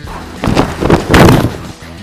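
A loud rushing, thudding noise about a second long, starting about half a second in and loudest just past a second, over quiet background music.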